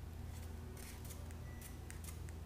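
Faint, scattered small clicks and ticks of a small screw being turned into an RC helicopter flybar cage part by hand, over a steady low hum.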